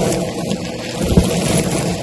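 Bissell vacuum cleaner running with a brush-head attachment, sucking up a heap of sequins and confetti so that the pieces rattle and crackle through the nozzle and hose, with a low thud about halfway.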